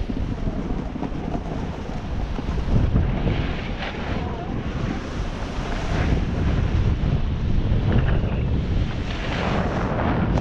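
Wind buffeting the microphone while a snowboard slides down a chopped-up ski slope, a steady rushing noise with the board's edge scraping the snow in short bursts every few seconds.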